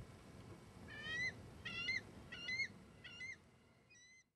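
Bald eagle calling: a series of five high, thin calls, each bending slightly upward, about 0.7 s apart, starting about a second in, with the last one fainter.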